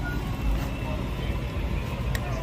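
Fire engine's diesel engine idling close by, a steady low rumble, with a low thump about half a second in.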